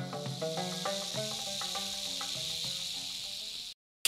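A snake sound effect, a steady high hiss, laid over the intro music's fading melodic notes; both cut off suddenly just before the end.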